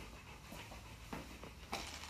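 Saint Bernard panting softly, about three breaths roughly half a second apart.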